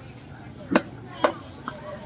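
A long fish-cutting knife chopping through fish flesh into a round wooden chopping block: two sharp chops about half a second apart, then a lighter knock.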